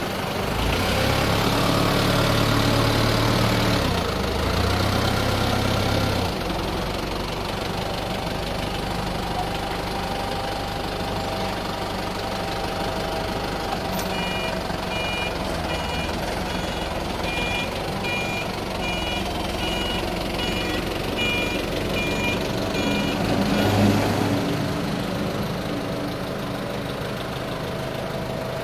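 Forklift engine running, working harder for the first few seconds as it moves off with the loaded pallet, then settling to a steadier run. About halfway through, the forklift's warning beeper starts, sounding a little more than once a second for about nine seconds.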